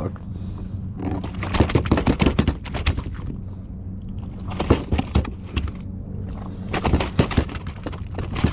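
A large fluke flopping in a landing net on a kayak, in three bouts of rapid slapping and rattling over a steady low hum.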